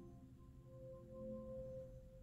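Amazon Echo (4th Gen) smart speaker playing its soft, bell-like start-up chime as it comes into setup mode: a few held tones fade out faintly, with a soft tone swelling again about a second in.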